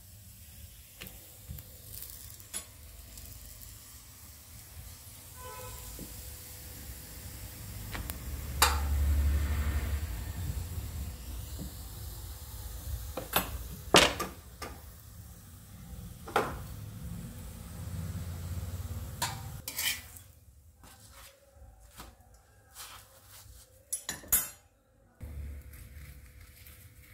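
A stuffed radish paratha frying on an iron tawa with a faint sizzle, while metal utensils clink and knock sharply against the pan and dishes several times.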